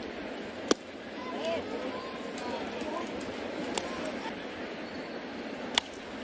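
Ballpark crowd murmur with two sharp pops. The first, under a second in, is a pitch smacking into the catcher's mitt. The second, a crack just before the end, comes as the batter swings.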